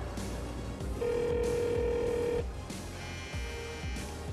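Mobile phone ringing with a steady electronic tone: one long ring about a second in, then a shorter one near the end.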